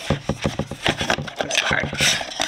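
A hand rummaging in a small cardboard advent-calendar drawer: a quick run of cardboard taps, scrapes and rustles as something is pulled out.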